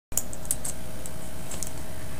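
A handful of light, irregular computer keyboard clicks over a steady low hum.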